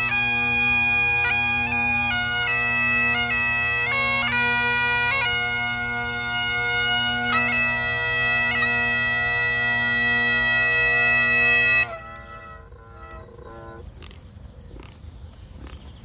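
A gaita (bagpipe) playing a tune: a melody on the chanter over a steady drone. The music cuts off suddenly about twelve seconds in, leaving only faint background sound.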